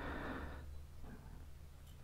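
Quiet background with only a faint, steady low rumble; no distinct sound stands out.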